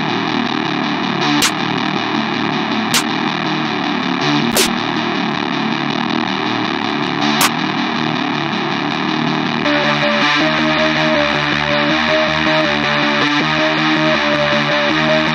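A distorted, guitar-like melody loop plays out of FL Studio, with four short sharp hits over it in the first half: snare one-shots being auditioned from the sample browser. About ten seconds in, the loop changes to clearer, steady pitched notes.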